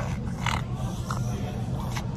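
A small long-haired dog making three short vocal noises, over a steady low background hum.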